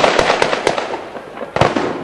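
Sharp bangs in a street clash: several cracks close together at the start over a steady noisy din, then one loud bang about a second and a half in.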